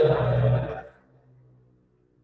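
A man's voice talking for about the first second, trailing off into a faint low hum, then near silence.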